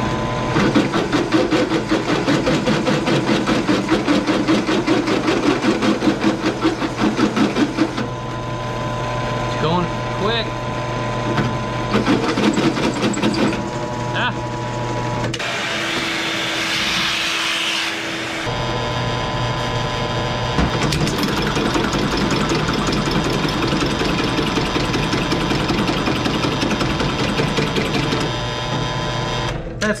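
Bilt Hard 10-inch benchtop drill press, 3/4 hp motor turning slowly at 350 RPM, running while its bit cuts through a stainless steel exhaust bung, with a fast rhythmic chatter from the cut during the first several seconds. About halfway through, a shop vacuum runs for a few seconds clearing the metal chips. The drill motor stops near the end as the bit breaks through.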